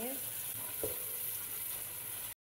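Sliced onions sizzling in hot oil in a steel pot as they are stirred with a spoon, a steady frying hiss. There is one brief knock a little under a second in.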